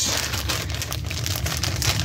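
Thin plastic bag of latex balloons crinkling as it is handled, a steady run of many small crackles.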